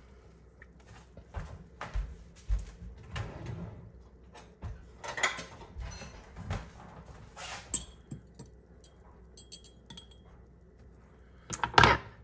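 A metal fork and a glass jar handled on a plastic cutting board: scattered light knocks and a few small clinks, then a louder knock near the end.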